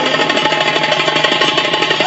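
Live party band playing: a hand drum beaten in a fast, even roll, with steady keyboard notes held over it.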